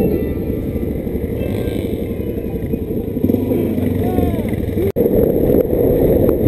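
Single-cylinder supermoto engine running at a steady cruise, mixed with tyre rumble on gravel and wind on the microphone. The sound cuts out for an instant just before five seconds in.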